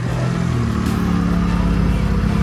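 Volkswagen Bora GLI's turbocharged four-cylinder engine running at a low, steady pitch as the car rolls slowly past.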